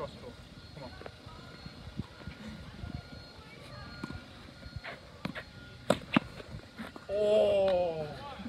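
Tennis ball being struck with a racket and bouncing on a hard court: a few sharp knocks past the middle. Near the end comes a loud, drawn-out shout from a man.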